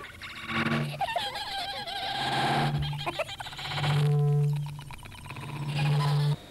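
Warbling, wavering pitched sounds interleaved with four short held low tones, like a jokey sound-effect jingle.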